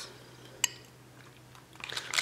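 A single sharp click of small handling noise about two-thirds of a second in, otherwise quiet room tone with a faint low hum.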